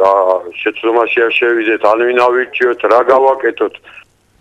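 Speech only: one voice talking without a break, stopping right at the end.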